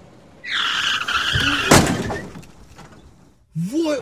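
Car tyres screeching for nearly two seconds with a thud partway through, followed by a man's voice exclaiming near the end.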